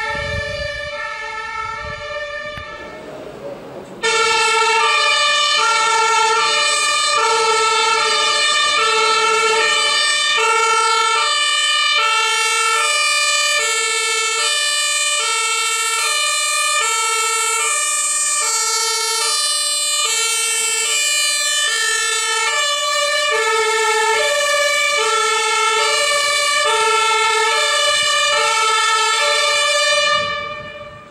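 A two-tone German fire-service siren on a Mercedes-Benz Sprinter fire van, alternating between a low and a high note with a full cycle about every 1.2 seconds. It is fainter at first and suddenly much louder from about four seconds in, then stops near the end.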